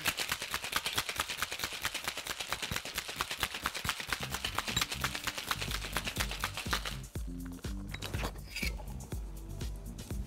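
Ice cubes rattling inside sealed tin-on-tin cocktail shaker tins shaken hard, a rapid, even rattle that stops about seven seconds in. Background music with a steady bass line comes in shortly before the shaking ends and carries on.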